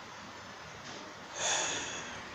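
A man draws a short, audible breath in through his nose about one and a half seconds in, after a second of faint room hiss.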